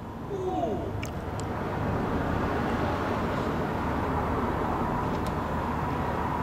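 A motor engine running steadily. Its level rises about a third of a second in, then holds.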